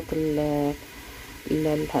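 A woman's voice speaking Arabic, with a faint sizzle of diced onion frying in oil in a steel pot behind it, heard in the short pause a little under a second in.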